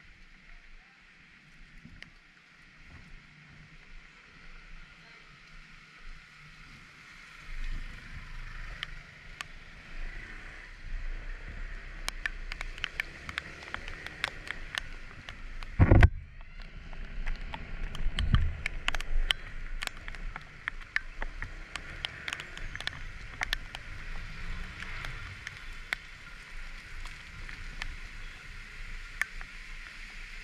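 Scooter ride in the rain: a steady hiss of wind and wet road, with a low engine hum that strengthens as the scooter moves off about eight seconds in. Many sharp ticks, like raindrops striking the camera, come in the second half. A single loud thump about sixteen seconds in.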